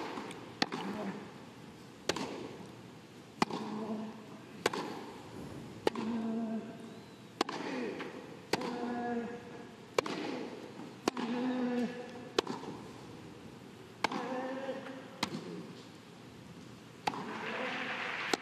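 Tennis racquets striking the ball in a long baseline rally, a sharp pock about every 1.3 seconds, many hits followed by a short grunt from the player. Crowd applause starts to rise near the end as the point is won.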